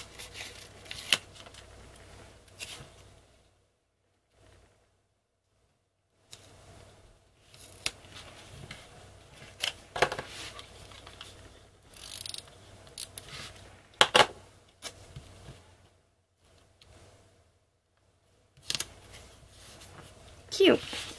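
Paper planner stickers being peeled off their backing sheet and pressed onto notebook pages: intermittent rustles and a few sharp clicks, broken by two pauses of near silence.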